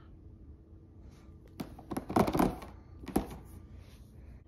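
Plastic clicks and knocks from handling an infant car seat and its harness: a single click, then a clattering cluster about two seconds in, then one sharp click a second later.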